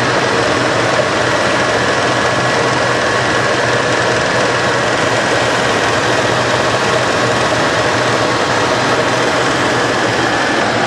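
The 1996 Buick Roadmaster's 5.7-litre LT1 V8 idling steadily, heard close up with the hood open.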